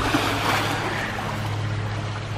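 Water from a bowl fountain spilling and splashing steadily into a swimming pool, with a low steady hum underneath.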